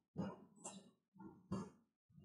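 A dog barking faintly: four short barks at uneven spacing.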